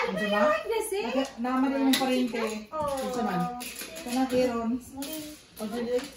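Children's voices talking and chattering over one another, with no words that can be made out.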